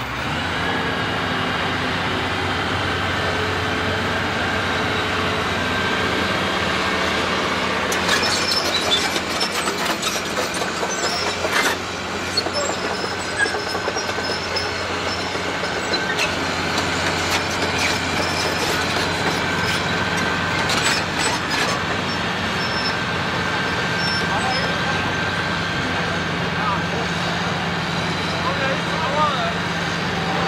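Heavy diesel machinery running steadily, a low engine drone with a faint high whine over it, while the mobile crane holds the lifted excavator. Scattered clicks and knocks come between about eight and twelve seconds in and again around twenty seconds.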